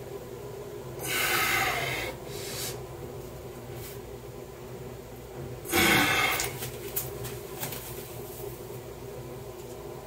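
A man breathing out hard twice while flexing, once about a second in and once, louder and shorter, around six seconds in, over a steady low hum.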